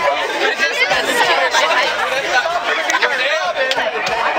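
Chatter of many people talking over one another at once, a dense babble of voices with no single speaker standing out.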